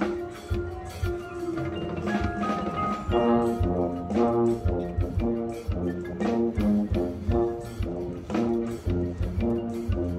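Marching band playing: brass chords over drums and front-ensemble mallet percussion. About three seconds in it gets louder and moves into short chords repeated in a steady rhythm.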